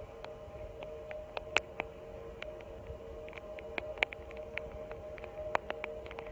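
Water sounds from a ringed seal moving at the surface of a pool: irregular small splashes and sharp clicks, over a steady two-note hum.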